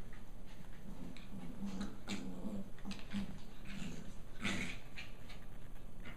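Pembroke Welsh corgis growling in play, a run of short low growls, with one louder, sharper cry about four and a half seconds in.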